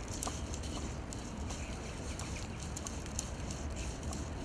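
Fly line being stripped in fast, hand over hand, with the rod tucked under the arm: a quick, irregular string of short soft swishes and ticks as the line runs through the fingers and rod guides, over a low steady rumble.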